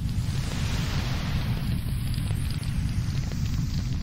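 Fire-and-explosion sound effect: a dense, low rumble of flame that starts suddenly and holds steady, then begins to fade near the end.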